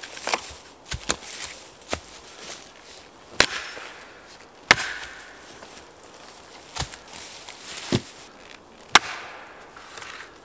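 Axe chopping into a felled birch log: about nine sharp blows at uneven intervals, with the hardest ones near the middle and just before the end.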